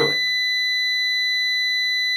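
Klein Tools MM700 digital multimeter's continuity beeper sounding one steady, unbroken tone while its test probes touch a metal coin, signalling a closed circuit (continuity).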